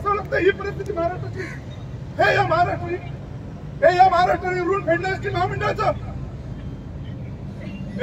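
A man speaking into a microphone in short phrases separated by pauses, over a steady low rumble.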